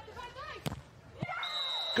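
A beach volleyball struck twice during a rally, the second contact a block at the net, followed near the end by a short high steady tone. Faint voices are under it.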